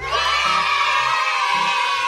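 A group of children's voices cheering together in one long shout that starts suddenly, over a children's song backing with a steady bass beat.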